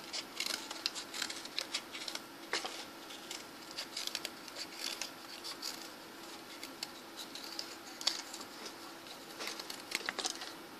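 Cardboard craft pieces handled and rubbed close to the microphone: faint, irregular scratches and clicks over a low steady hum.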